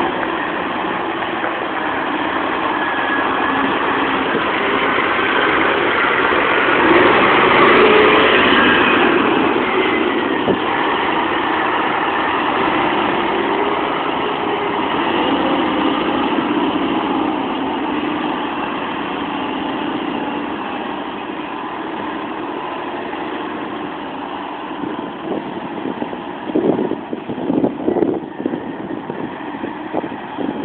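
Scania semi-truck's diesel engine running as the truck moves off and manoeuvres, rising in pitch and loudness about seven seconds in, then settling and easing off. A few uneven thumps near the end.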